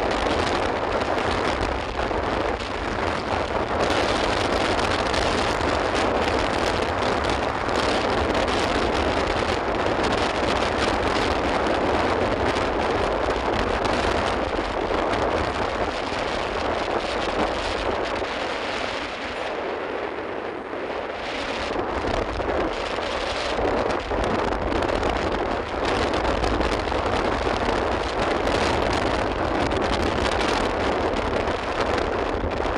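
Steady rushing of wind on the microphone mixed with road noise from a moving vehicle, easing briefly about two-thirds of the way through.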